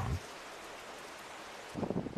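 Steady hiss of light rain falling on the bamboo and undergrowth of a hillside.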